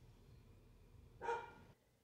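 A single short, high-pitched yelp about a second in, against near silence.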